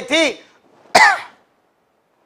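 A man clearing his throat once, a short sharp burst about a second in.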